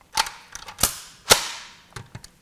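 Three sharp metallic clacks, each ringing briefly, from an M16A2 rifle being handled, with a few fainter clicks between them; the last clack is the loudest.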